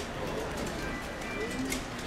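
Outdoor crowd murmur with music playing in the background.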